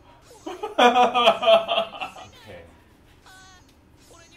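A man laughing loudly in quick repeated bursts for about two seconds, then trailing off.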